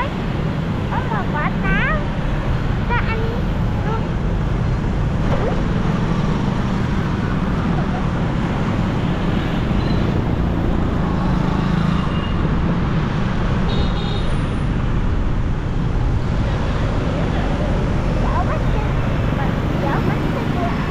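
Steady low rumble of dense motorbike and car traffic heard from a motorbike riding along in it, scooter engines and road noise blending into one continuous din.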